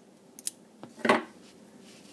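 Scissors cutting a yarn tail to fasten off: a couple of light clicks of the blades, then a louder sharp snip a little after a second in.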